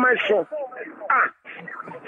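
Speech only: a person talking over a phone line.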